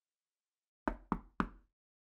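Three quick knocks on a door, about a quarter of a second apart, a little under a second in.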